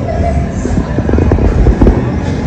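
Casino floor ambience: background music under a heavy low rumble, with a few short knocks that are loudest near the end.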